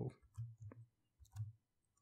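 A few faint keystrokes on a computer keyboard, spaced out one at a time.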